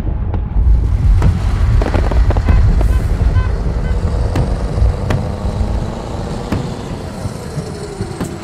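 Loud noise: sharp bangs and cracks over a heavy low rumble. The rumble eases near the end.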